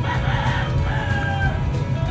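A rooster crowing once, about a second and a half long, rough at first and ending in a held, slightly falling note, over background music.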